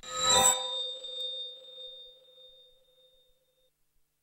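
A music sting cuts off on a bright bell-like chime, which rings out with a low tone and several high ones and fades away over about three seconds.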